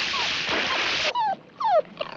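About a second of loud water splash as a dolphin throws water over a dock, then a small poodle yelps twice, each yelp falling in pitch.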